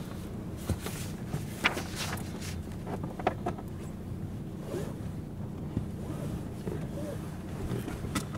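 Steady low hum of a stationary car running at idle, heard inside the cabin, with scattered rustles and small clicks of people shifting about and handling things.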